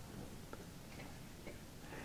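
Quiet room noise picked up by the microphone during a pause, with two small, faint ticks about a second apart.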